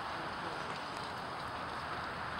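Steady, even outdoor background hiss with no distinct events in it.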